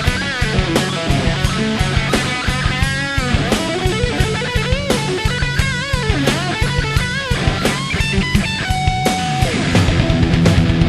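Electric guitar playing a fast instrumental rock lead line over a drum beat, with bent, wavering notes and a long held note near the end.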